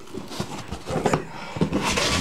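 Box knife slicing through packing tape on a cardboard box: irregular scratchy scraping and crackling of tape and cardboard, getting louder about a second in, with a brief tearing hiss near the end.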